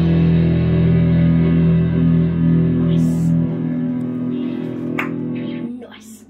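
Final chord of a punk rock song ringing out on distorted electric guitar and bass. The lowest bass note cuts off about three and a half seconds in, and the rest of the chord fades, with a small click near the end.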